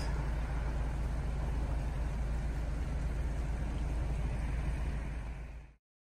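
Steady low rumble of outdoor background noise, fading out about five and a half seconds in.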